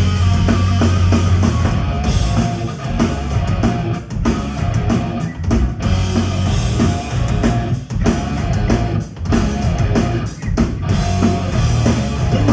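Live rock band playing without vocals: electric guitar, bass guitar and drum kit, cut by several short stops through the passage.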